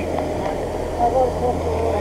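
Voices on a rough recording of an arrest, over a steady low hum: agents questioning a wounded suspect.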